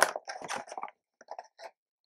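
Thin clear plastic tub being handled: a sharp crackle at the start, then plastic crinkling and crunching through the first second, and a few small clicks near the middle.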